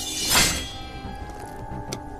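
A short swelling whoosh effect, a blade-gleam sound, that rises and falls within half a second and is the loudest thing here, over steady background music. A sharp click comes near the end.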